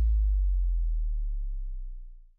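A lone, sustained deep bass note ends a future house track, fading slowly.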